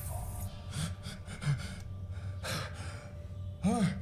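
A man's heavy breathing from a film soundtrack: three ragged gasps over a steady low hum, with a man's voice starting to speak near the end.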